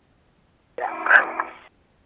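A single spoken "yeah" over the narrow, tinny spacewalk radio loop, after dead silence. A faint click comes partway through the word.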